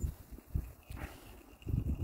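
Wind buffeting the microphone in irregular low rumbles, gusting strongest near the end.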